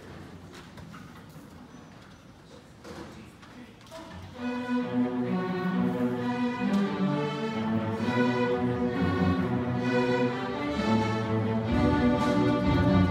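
A school string orchestra of violins, cellos and basses starts playing together about four seconds in, after a few seconds of quiet in the hall, and then plays on steadily with sustained bowed chords.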